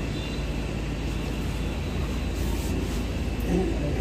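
Steady low rumble of background noise, with faint voices near the end.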